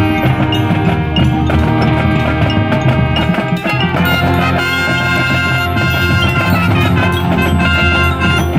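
High school marching band playing its field show: brass over a front ensemble of marimbas, chimes and drums. The music dips briefly about three and a half seconds in, then a new phrase begins.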